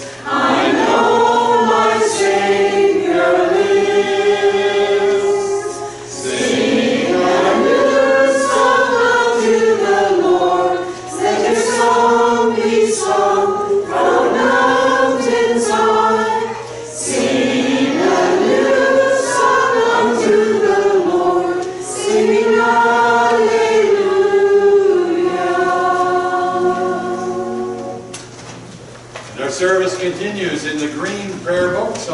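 Church choir singing together in phrases a few seconds long, with short breaks between lines; the singing tails off near the end.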